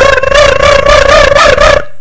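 A loud, long vocal cry held at one slightly wavering pitch for nearly two seconds, stopping just before the end, over a low rumbling noise.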